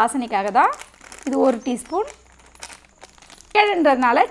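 A person speaking in short phrases, with a pause of about a second and a half before the speech starts again near the end.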